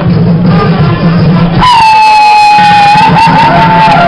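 Live folk band music for a Oaxacan Guelaguetza dance, with a loud, long held high note starting about one and a half seconds in and wavering near the end.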